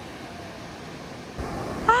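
Ocean surf and wind on the microphone, a steady noise that grows louder about a second and a half in. A high-pitched voice starts right at the end.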